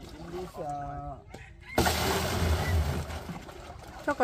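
Water poured from a bucket into a plastic drum: a sudden, loud splashing rush about two seconds in that lasts about two seconds, after a short voice.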